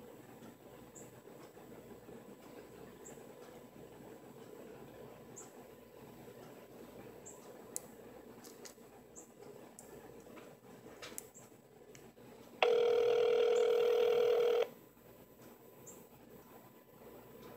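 Phone call ringing out through a smartphone's speaker: faint line hiss and a few small clicks while it connects, then one steady ringback tone about two seconds long near the end, cutting off sharply.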